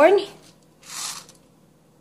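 Whole black peppercorns shifting and rattling briefly in a small glass bowl as it is lifted and tilted, about a second in, after the last spoken word.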